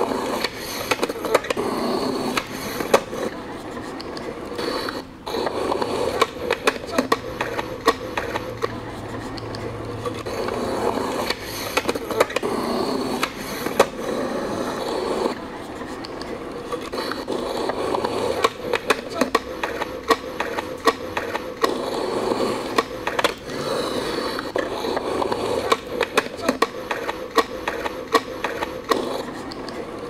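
Skateboard wheels rolling over a concrete skatepark, with frequent sharp clacks and knocks from the board.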